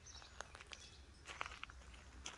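Faint footsteps on a gravel and mulch garden path: a few light, scattered steps.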